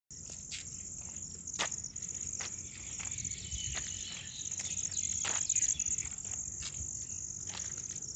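A steady, high-pitched insect trill, like crickets chirring in the grass, with scattered faint clicks.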